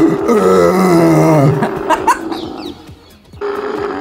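A camel's mating call: one long guttural, groaning call that wavers and sinks slightly in pitch, then fades away.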